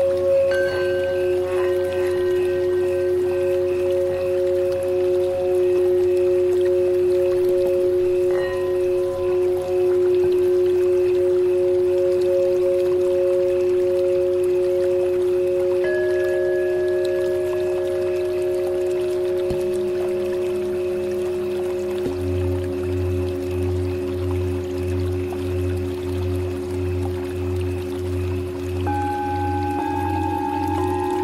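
Tibetan singing bowls ringing in long, sustained, slightly wavering tones, several pitches overlapping. New bowl tones enter about a second in, around the middle and near the end. A low pulsing hum joins about two-thirds of the way through.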